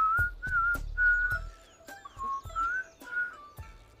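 A man whistling a tune in short notes, some sliding upward, over background music with sharp clicks.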